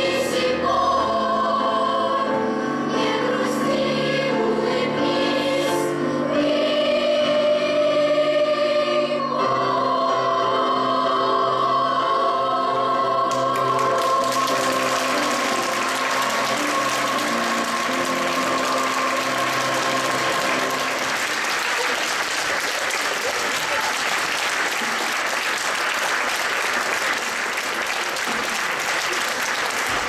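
Girls' choir with piano sings the closing bars of a song and ends on a long held chord. Audience applause breaks out about halfway through, over the fading chord, and carries on.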